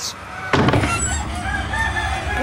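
Chickens clucking, starting abruptly about half a second in, with short calls repeated in quick succession.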